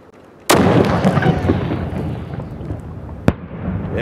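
RPG-7 rocket-propelled grenade launcher firing: a sudden loud blast about half a second in, followed by a long rumbling roar that fades over about three seconds, with a single sharp crack near the end.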